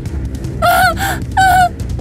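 A woman's voice gives three short, high, wavering cries over background music.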